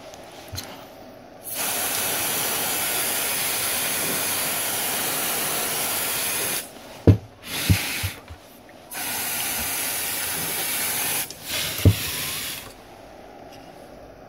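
Can of freeze spray hissing in bursts onto a shorted logic board, sprayed to frost it so the shorted chip shows itself. First a long burst of about five seconds, then several shorter ones, with a few sharp knocks in between.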